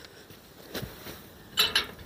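A few light metallic clinks from a wrought-iron gate and its latch being handled, most of them about a second and a half in, against quiet outdoor background.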